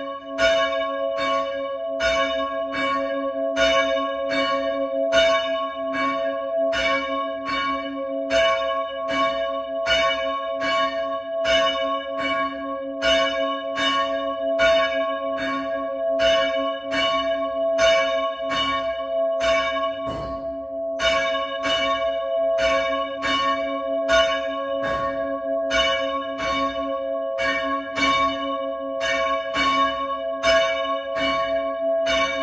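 A single church bell rung by rope, struck rapidly and evenly at about two to three strokes a second, its tone ringing on between strokes, with a short break about twenty seconds in.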